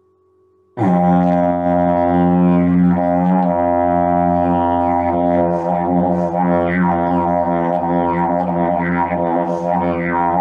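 Didgeridoo drone starting suddenly about a second in and held steadily, a low fundamental with strong overtones that begin to shift and sweep up and down partway through as the player changes his mouth shape. Played live as a test of whether the instrument comes through the computer's microphone clearly.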